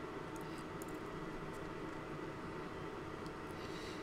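Steady low room hum with a few faint, light ticks and rustles as hands pull thin servo wires loose and sort them among the electronics.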